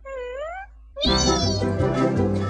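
A short meow-like call that dips and then rises in pitch. About a second in, loud music comes in, opening with a bright upward run.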